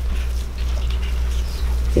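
A steady low hum, with faint soft snips and rustles of small scissors cutting open a leathery ball python eggshell.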